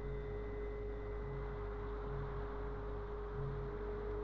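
A steady, single-pitch electronic tone over a radio link, with hiss and a low hum beneath it: a signal tone during the bomb-run countdown.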